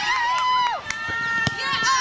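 High-pitched children's voices shouting and calling out during a youth football match, some calls held for about a second, with a sharp knock about one and a half seconds in.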